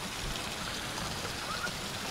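Faint, steady rush of running water, with no distinct events.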